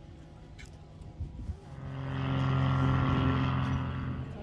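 A motor vehicle engine running close by at a steady pitch, growing louder about halfway through and fading away near the end.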